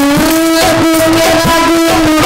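Live Baul folk music: one long held note rides over the band while a dhol drum beats underneath, its low strokes dropping quickly in pitch.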